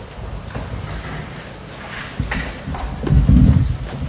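Irregular dull thumps and knocks close to the microphone, the loudest cluster about three seconds in, with a few lighter clicks between them: a person moving or handling things near the recording microphone.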